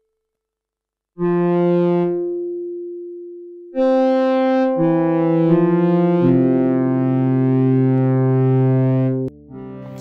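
Yamaha SY77 FM synthesizer playing an analog-style pad patch. After about a second of silence a two-note chord sounds and fades away. A second chord follows, builds as more notes are added, is held, and cuts off about a second before the end.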